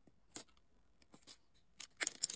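Faint clicks of a steel wire stripper's jaws closing on and stripping the plastic insulation from a wire: one click about a third of a second in, two soft ticks in the middle, and a sharper click near the end.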